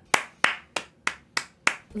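Hand claps: six sharp, evenly spaced claps, about three a second.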